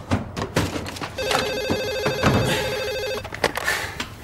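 Telephone ringing: one steady electronic ring tone lasting about two seconds. Before and after it come the knocks and clicks of the phone being handled.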